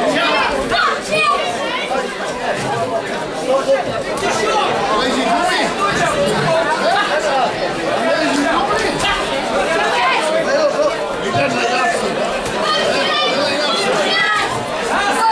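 Crowd of boxing spectators talking and calling out over one another, a steady babble of many voices.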